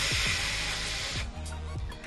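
A long breath blown into a cupped fist to warm freezing hands, a hiss lasting just over a second, over background music.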